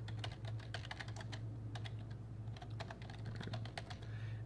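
Computer keyboard being typed on: a quick, irregular run of key clicks as a line of text is entered, over a steady low electrical hum.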